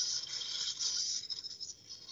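Marty the Robot V2's small servo motors whirring as the robot runs a get-ready-and-wiggle routine: a high-pitched, rattly buzz that dies away near the end.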